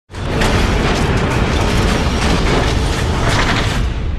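Cinematic boom-and-rumble sound effect for a logo reveal: a loud, dense rumbling noise with a deep low end that starts suddenly just after the start and holds steady.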